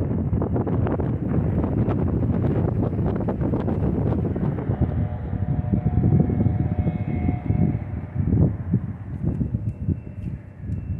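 Strong wind buffeting the camera's microphone in uneven gusts, a heavy low rumble.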